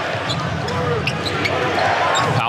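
Basketball game on an indoor court: a basketball bouncing on the hardwood floor, with voices.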